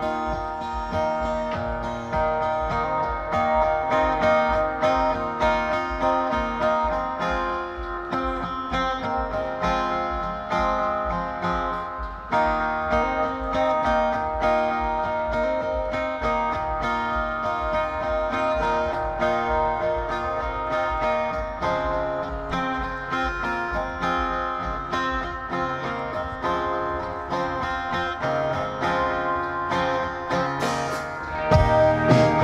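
Live indie rock band playing: an acoustic guitar strummed over other guitars and drums, with a steady low beat.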